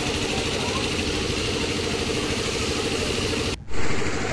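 Engine-driven water pump running steadily, driving a hose jet that sprays water to wash flood silt off the steps, with a hiss of spray over the engine's hum. The sound drops out briefly near the end.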